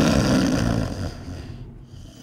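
One long, loud snore that starts abruptly and fades away over about a second and a half.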